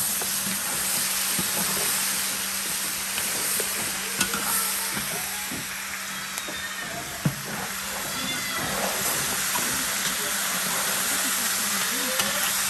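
Guinea fowl pieces sizzling as they fry in a large metal pan, stirred with a long metal spoon that scrapes and clicks against the pan now and then. A faint low steady hum runs underneath.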